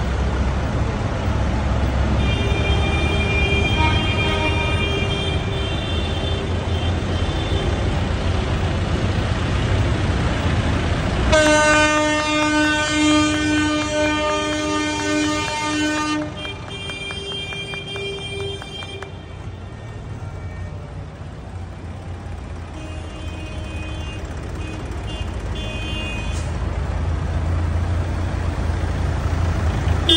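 Vehicles and tractors driving past slowly with a low engine rumble, sounding their horns again and again: a long, loud horn blast about 11 seconds in lasting some five seconds, with shorter honks before and after. Hand clapping comes in just after the long blast.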